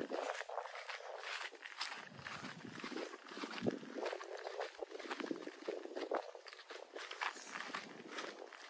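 A person's footsteps on a grass lawn, with irregular soft crunching and rustling.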